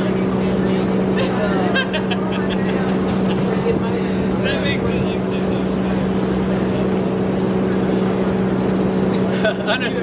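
Steady low machine hum, with a faint, indistinct voice speaking now and then over it.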